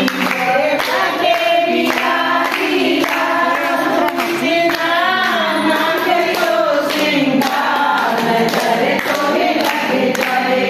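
A group of voices singing a Hindi song together.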